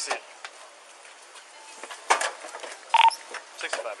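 Clicks and rustling of a body-worn camera as the wearer moves around a car, with a short electronic beep about three seconds in, just before a police radio call begins.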